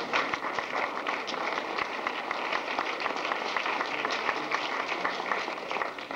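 An audience applauding: many hands clapping steadily, dying away at the end.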